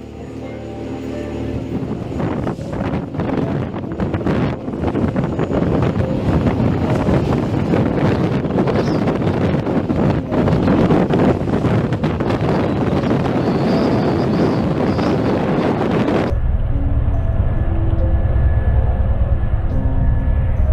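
Wind rushing and buffeting a phone microphone, building in level over the first couple of seconds. At about 16 seconds it changes abruptly to a deeper, heavier low rumble with the high end gone.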